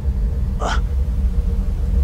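Steady low rumble of a film soundtrack, with one short, sharp gasp-like intake of breath just under a second in.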